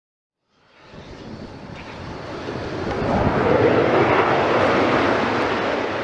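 Jet aircraft passing overhead: a rushing jet noise swells in from silence about half a second in, peaks around the middle, and begins to fade near the end.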